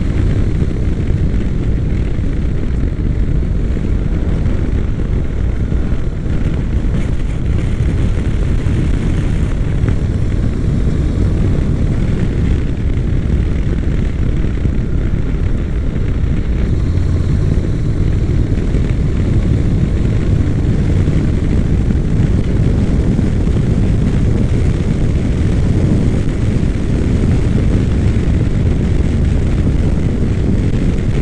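Honda NC700X motorcycle riding at speed: a steady rush of wind on the microphone over the low drone of its parallel-twin engine.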